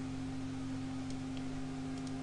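Steady low electrical hum with faint hiss, the background noise of the recording between words, with a couple of faint clicks about a second in.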